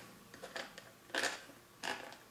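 Faint handling of a plastic bottle of liquid copper fungicide as it is picked up and gripped at its cap: two short scuffing sounds, about a second in and near the end.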